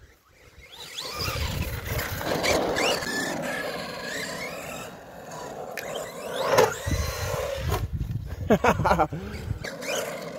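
Arrma Big Rock RC monster truck's electric motor whining as it drives, the pitch rising and falling as it speeds up and slows, with a sharper peak about two-thirds of the way in.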